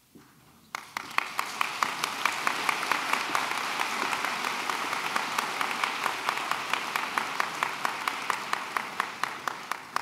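Audience applauding. The applause breaks out suddenly about a second in after a brief hush and keeps up steadily, easing slightly near the end.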